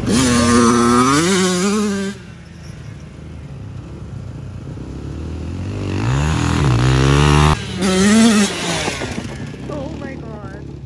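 Dirt bike engine revving as the rider takes dirt jumps, the throttle opened in bursts. A loud rev rises and falls over the first two seconds, then the engine runs quieter before climbing in a rising rev around six seconds that cuts off suddenly, followed by another short rev.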